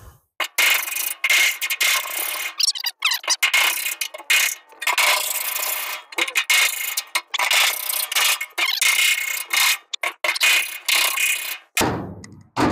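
A metal hand tool scraping and rubbing against a steel trailer fender in repeated rough strokes of about half a second to a second, with a faint squeal running through them.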